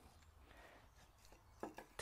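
Near silence: faint sounds of a boning knife cutting skirt trim off a venison leg on a wooden board.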